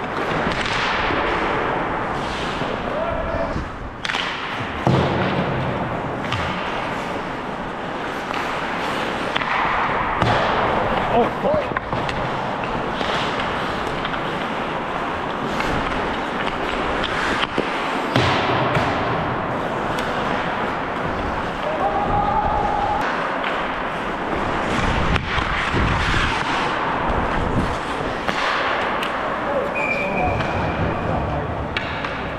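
Ice hockey play heard close up from a helmet-mounted camera: skate blades scraping and carving the ice in strides, with sharp clicks of sticks and puck, occasional thuds and players' indistinct shouts.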